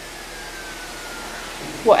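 Steady background hiss with a faint tone that falls slowly in pitch; a woman starts speaking near the end.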